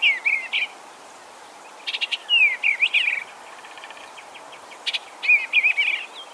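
Eastern bluebird singing: short phrases of soft, warbled whistles, three of them with pauses between, over a steady background hiss.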